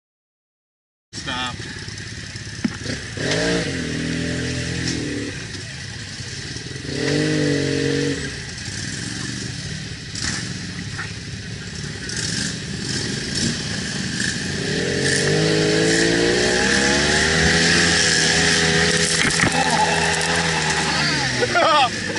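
Side-by-side UTV engine revving up and easing off in several surges, then pulling hard and steady for several seconds near the end, with occasional knocks.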